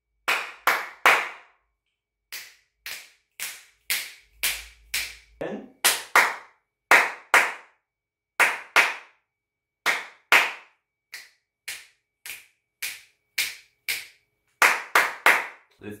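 A man clapping his hands sharply, in single claps and pairs about half a second to a second apart, each clap followed by a short echo from the small room. These are test claps for hearing the room's reverberation with and without acoustic foam panels on the wall, recorded on a smartphone.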